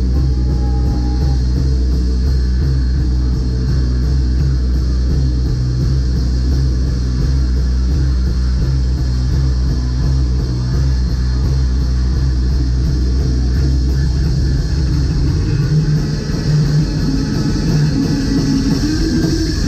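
Live rock band playing loud, with electric guitar and bass guitar over drums; the bass line changes about fifteen seconds in.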